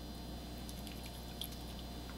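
Faint handling of small capped plastic test tubes of reagent: a few light, scattered clicks and a soft liquid squish over a low steady hum.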